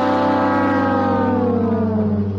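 A brass sound-effect note, the long last 'wah' of a sad-trombone gag, held and sliding slowly down in pitch with a wobble over a steady low tone.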